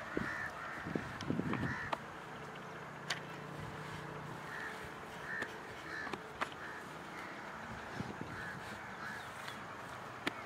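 Crows cawing repeatedly in short calls, over the squelch and thud of wet mud being scooped and packed by hand; the loudest thuds come in a cluster about a second in.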